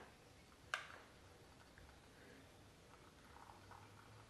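Faint, near-silent trickle of hot water poured from a gooseneck kettle into a glass teapot of black tea and orange peel, with one sharp click about three quarters of a second in.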